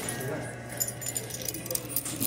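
Indistinct chatter of customers in a fast-food restaurant, with a scatter of light metallic clinks and jangles from about a third of the way in.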